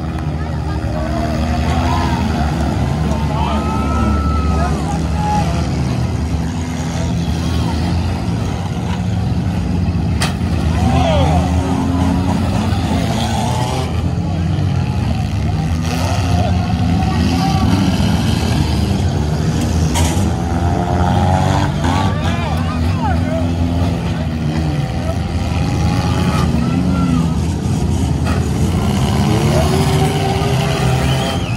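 Engines of compact demolition derby cars running and revving hard in the arena, with a few sharp crashes of cars colliding. A crowd shouting and cheering close by.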